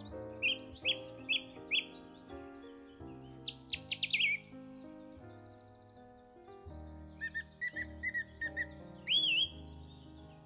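Birds chirping over background music of sustained chords: a few separate chirps near the start, a quick run of calls around four seconds in, and a series of lower chirps ending in a rising whistle near the end.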